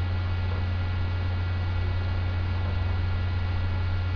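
Steady electrical mains hum with a faint hiss, unchanging throughout, picked up by the recording.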